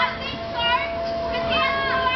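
Riders on a swinging amusement ride screaming and shouting, several high voices gliding up and down and overlapping, over a steady hum.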